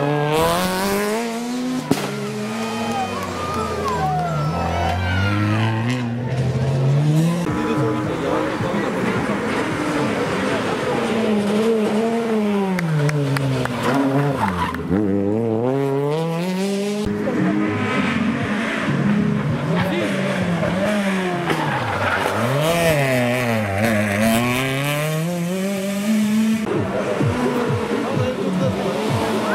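Peugeot 208 rally cars and then a Peugeot 205 rally car passing one after another through a tight corner, each engine revving up and falling away again with the gear changes and lifts, the pitch rising and dropping every couple of seconds. Tyre squeal through the corner.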